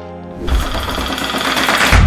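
A steady held music chord, then from about half a second in a loud, noisy swell that builds with deep low hits near its start and end: a transition sound effect leading into a logo intro.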